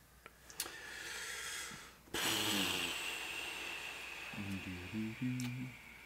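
A person breathing in and then letting out a long breathy sigh, which starts suddenly about two seconds in and slowly fades, followed near the end by a couple of short low hums or murmurs.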